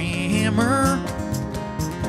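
Live acoustic band music: acoustic guitar strumming with cajon and keyboard in an upbeat country-folk groove, and a short sung phrase in the first second.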